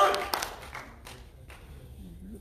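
A voice trails off, then a few scattered hand claps from the congregation, after which the room falls quiet.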